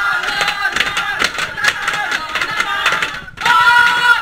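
A group of boys chanting and yelling together as a team war cry, voices overlapping, some held on long notes.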